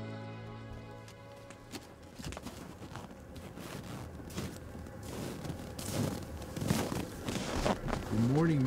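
Background music fading out about a second in, then irregular footsteps in snow with scattered rustles and knocks.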